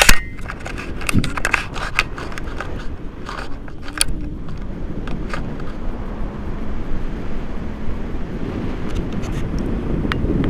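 Airflow buffeting an action camera's microphone during paraglider flight: a steady low rumble of wind noise. A few sharp clicks and rustles of handling come in the first few seconds.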